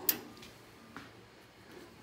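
Light metallic clicks as a washer is fitted onto a pedal car's steel pedal crank: one sharp click just after the start and a fainter one about a second in.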